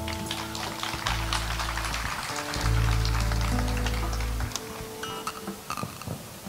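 Live band music: long held low bass notes that change in steps under sustained chords, with faint scattered ticking throughout.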